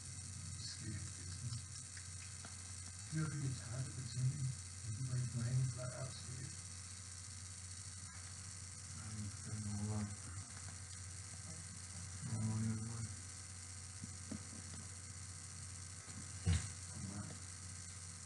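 Quiet room tone: a steady hiss with a faint mains hum, broken a few times by faint, low murmured voices, and a single knock near the end.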